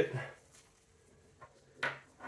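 Light clicks of metal climbing hardware being handled: a faint click about one and a half seconds in, then a sharper clink just before the end.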